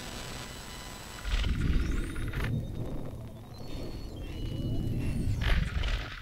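Glitchy electronic intro sting: a low rumble comes in about a second in, with two swooshes and short high beeps over thin steady high-pitched whine tones that sound like electrical interference.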